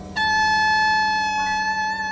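Live jazz quartet near the end of the tune: a high woodwind note comes in suddenly and is held out, a second tone joins about three-quarters of the way through, and a slight vibrato appears near the end.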